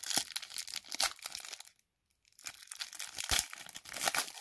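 Foil wrapper of a 2022 Donruss football card pack being torn open and crinkled by hand, in two spells with a short pause about halfway through.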